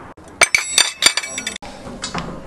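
A quick run of sharp clinks of glassware and tableware, each with a brief high ringing, lasting about a second.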